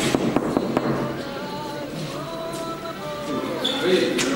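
Knuckles knocking on a door: a quick series of about four knocks in the first second.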